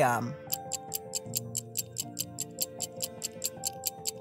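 Quiz countdown timer sound effect: fast, even stopwatch ticking, about seven ticks a second, starting about half a second in, over soft background music with held notes.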